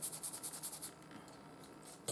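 A paintbrush scrubbed quickly back and forth on paper in short, even strokes, about eight a second, stopping about a second in.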